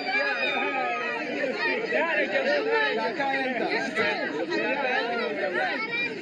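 Several people talking over each other in untranslated chatter, with a laugh about four seconds in.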